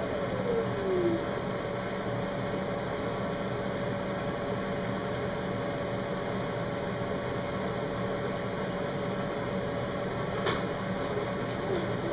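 Steady background hum carrying a faint held tone, with one faint click about ten and a half seconds in.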